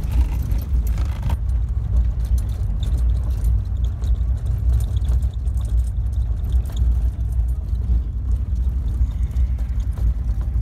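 Vehicle driving on a gravel road, heard from inside: a steady low rumble with light rattling and clicking throughout.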